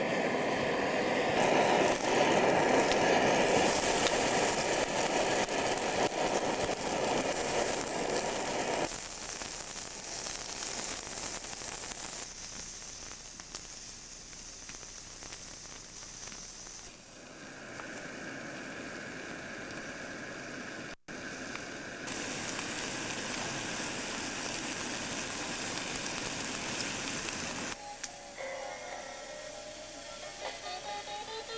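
Steady hissing noise that changes abruptly several times, as if cut between takes, with a brief dropout about two-thirds of the way through. Guitar music comes in near the end.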